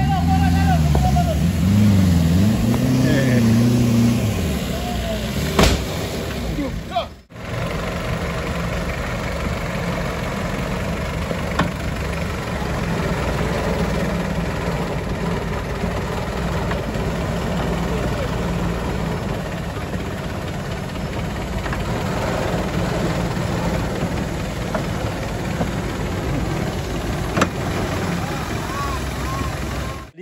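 Off-road 4x4's engine working on the trail, its pitch rising and falling for the first few seconds. After a brief break about seven seconds in, the engine runs steadily close by.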